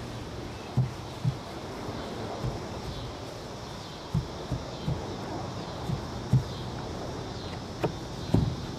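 Steady outdoor background noise broken by about nine soft, low thumps at irregular intervals.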